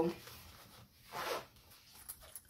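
Zipper on a laptop sleeve's small pocket being pulled, one short zip about a second in.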